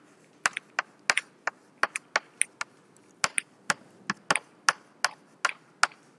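Chalk writing on a blackboard: the stick taps and clicks against the board with each stroke, a quick irregular series of sharp ticks, about two or three a second.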